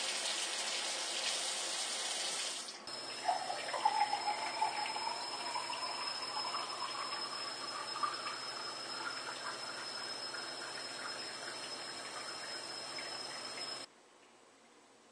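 Tap water running from a kitchen faucet into a bottle filter and splashing into a steel sink; about three seconds in, it gives way to filtered water pouring from the bottle filter into a drinking glass, the pitch of the stream rising steadily as the glass fills.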